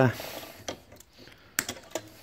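Nylon cable tie clicking through its ratchet as it is pulled tight, then sharp clicks about one and a half seconds in as the tail is cut with side cutters.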